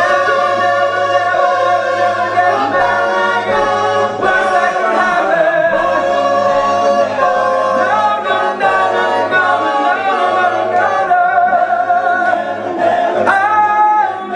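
A large a cappella vocal group singing in close harmony without instruments, the voices continuous throughout.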